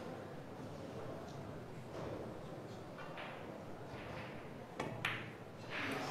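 Quiet hall room tone with a few faint clicks of billiard balls as the black 8 ball is played, and a slightly louder knock about five seconds in.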